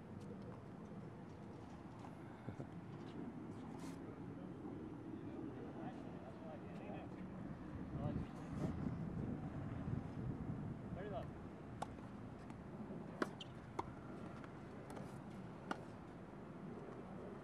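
Tennis balls struck by rackets in a doubles rally: several short, sharp hits spaced a second or more apart, the loudest past the middle, over a low steady background rumble.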